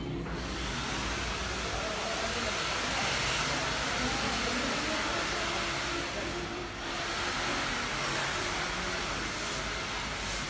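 A steady rushing hiss with a short break about seven seconds in, over faint voices.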